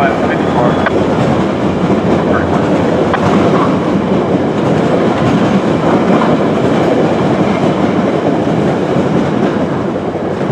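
Passenger train of bilevel coaches rolling past and away on the rails: a steady, loud run of wheel-on-rail noise.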